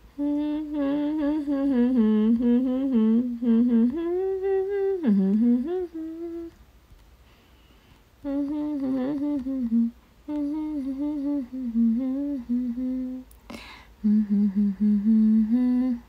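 A young woman humming a tune in three phrases, stepping between held notes, with short pauses about six and thirteen seconds in.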